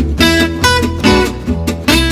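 Gypsy jazz acoustic guitar music: a lead guitar picking melody notes and chords over a steady strummed rhythm and a bass line.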